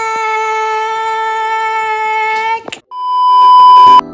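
A voice holds one long, steady note for about two and a half seconds, then breaks off. After a brief gap a loud, high-pitched test-tone beep, the kind played with television colour bars, swells up and holds until the end.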